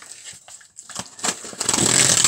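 Packaging on a CD box set being torn open by hand: scratchy tearing and crinkling with scattered clicks, building to its loudest near the end.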